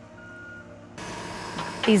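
A short high beep of a tracked excavator's warning alarm, one of a series about a second apart, over the low drone of its engine. About halfway through, this gives way to a steady hiss of outdoor background noise.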